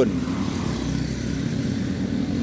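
Two small motor scooters passing close by on an asphalt road, a steady engine and tyre noise as they go past.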